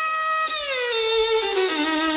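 Solo violin playing a taqsim, an unaccompanied improvisation in the Arabic maqam Nahawand. A held note gives way, about a quarter of the way in, to a phrase that slides down in steps by about an octave to a low note near the end.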